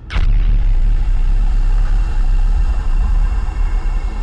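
Sound effects of a TV news bulletin's opening: a sharp whoosh at the very start, then a loud, deep, steady rumble with faint held tones above it.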